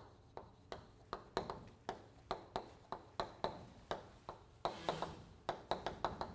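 Chalk writing on a blackboard: a quick series of sharp taps, about three a second, as letters are struck out, with a short scratchy stroke about five seconds in.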